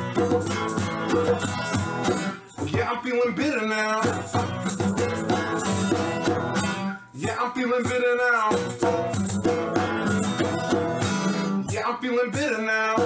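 Live acoustic song: an acoustic guitar strummed in rhythm with a hand-shaken maraca, and a voice singing in phrases.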